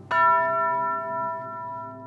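A single hanging metal chime tube (tubular bell) struck once with a mallet, then ringing on with several clear overtones that slowly fade.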